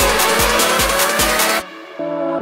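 Electronic dance music: a steady kick-drum beat, about two and a half a second, under a rising synth sweep that builds up and then cuts out abruptly about a second and a half in, leaving a quieter passage.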